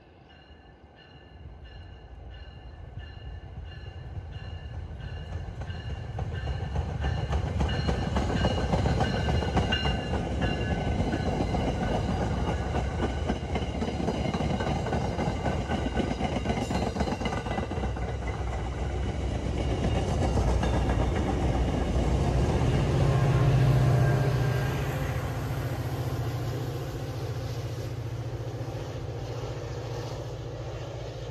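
MBTA commuter rail train passing at speed: the wheels running on the rails build from faint to loud as the coaches go by, with a deep steady hum loudest near the end, then fading as the train moves off.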